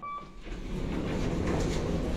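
A short electronic beep from the elevator's floor button as it is pressed, then, about half a second in, a rising, steady rumble from the car doors starting to slide shut.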